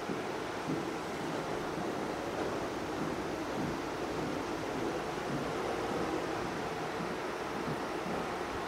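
Steady hiss of room noise in a quiet classroom, with only faint small sounds in it.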